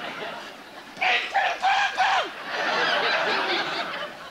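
Theatre audience laughing, with a high, strangled puppet voice for the parrot sounding a few short notes from about a second in, the last sliding down in pitch. The voice comes while the performer is drinking from a glass, as the ventriloquist's gag.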